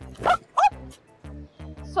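Background music with a dog barking three times in short calls that fall in pitch.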